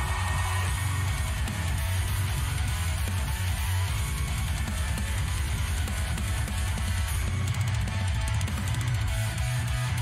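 Synthwave metalcore song playing: low-tuned electric guitars and bass over fast drums, with synth tones on top.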